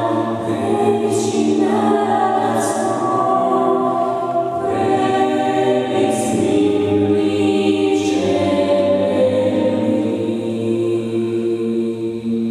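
Sacred a cappella singing by a small mixed vocal ensemble, one male and three female voices, in close harmony with long held notes over a steady low note.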